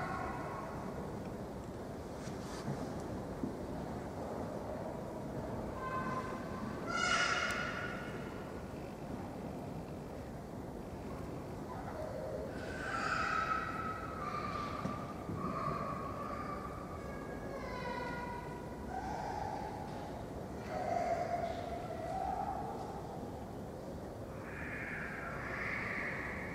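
Choir singing a slow melody of held notes, faint and distant, the line stepping downward through the middle of the passage.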